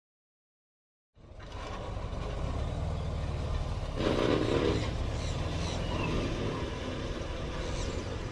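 About a second of silence, then a steady, noisy ambience fades in and carries on, swelling a little about halfway through, with a few faint high chirps. It is an ambient sound-effect bed opening the next track, before its music begins.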